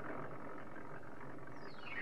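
Cartoon sound effect of a stage curtain being hauled open on its rope: a rough, rushing noise that starts suddenly. Near the end a falling electronic glide begins, sweeping down into a synthesizer jingle.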